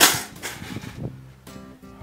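A sharp metallic clank as a wire cage is set down, right at the start, its rattle dying away within about half a second.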